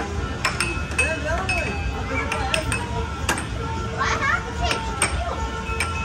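Air hockey puck and plastic mallets clacking against each other and the table's rails in an irregular series of sharp knocks, with excited voices calling out between hits.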